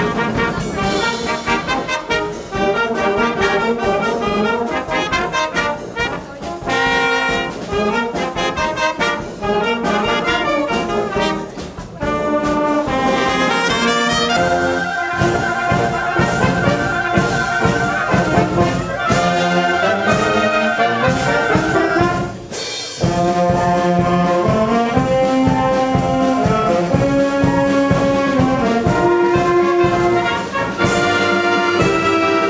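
Concert wind band playing: brass (tubas, trombones, trumpets) with clarinets, saxophones and flutes. The music breaks off and changes abruptly about twelve and about twenty-two seconds in, as different band performances follow one another.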